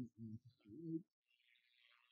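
Low cooing of a pigeon in a run of short phrases that stops about a second in, followed by a faint soft hiss.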